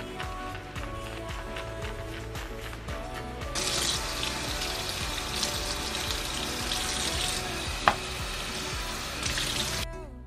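Bathroom sink faucet running, water splashing into the basin as a makeup brush is rinsed under it, starting about a third of the way in and stopping just before the end, over background music. One short sharp click about two-thirds in.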